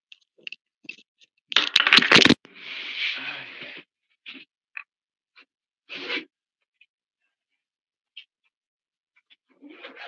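Scattered small clicks and knocks of handling, with a loud clatter about a second and a half in followed by roughly a second and a half of rustling noise, and another short rustle near the middle.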